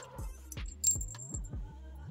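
Small brass model cannon barrels clinking against one another in the hand, a few light metallic clicks, with plastic bag crinkling as they are taken out. Soft background music plays underneath.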